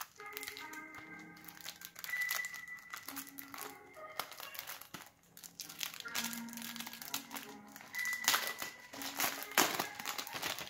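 Clear plastic shrink-wrap crinkling and crackling as fingers pick at it and peel it off a CD jewel case, the crackles loudest in a flurry near the end. Background music with held notes plays throughout.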